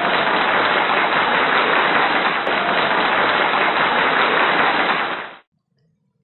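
Applause: a dense, even clatter of many hands clapping, steady in level, that cuts off suddenly about five seconds in.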